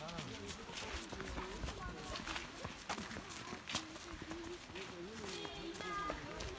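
Footsteps on a sandy dirt path, irregular steps at walking pace, with people's voices talking in the background.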